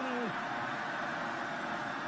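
Steady noise of a large football stadium crowd, carried on the game broadcast.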